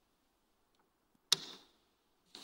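A single sharp knock about a second and a quarter in, dying away over a fraction of a second in a reverberant room, after near silence.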